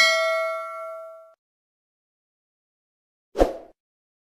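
Bell-ding sound effect from a subscribe-button animation, with several tones ringing out and fading over about a second. Near the end comes one short burst of noise.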